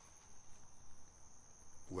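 Insects trilling steadily outdoors, a faint, thin, high-pitched continuous tone.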